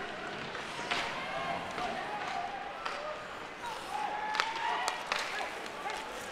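Ice hockey rink ambience during play: a steady wash of crowd noise with distant voices calling out across the arena, and a few sharp clacks of sticks and puck on the ice.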